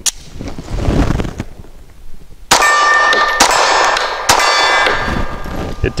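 A 9mm HK P30SK pistol fires three shots about a second apart, each followed by the ringing clang of a steel target plate being hit. A single sharp click comes at the very start.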